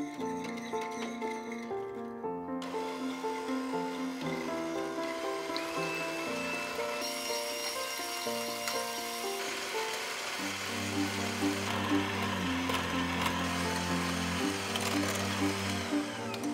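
Electric hand mixer whirring as its beaters whip heavy cream and matcha, under background music. The motor comes in a couple of seconds in and grows louder in the second half.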